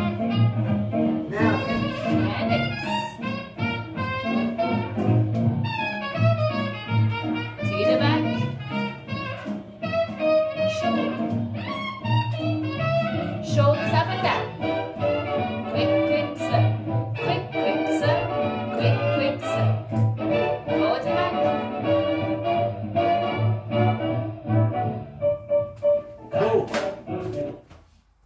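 Swing jazz music playing with a steady bass beat, stopping a second or two before the end.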